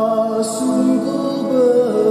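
Male cantor singing the responsorial psalm, holding long sung notes with a short hissing consonant about half a second in.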